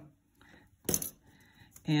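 A single sharp metallic clink about a second in as a metal costume-jewellery brooch is handled or set down, with faint handling sounds around it.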